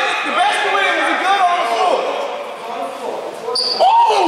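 Basketball game sounds in a gym: a ball bouncing on the hardwood amid many short, overlapping squeaks and indistinct calls from players on the court.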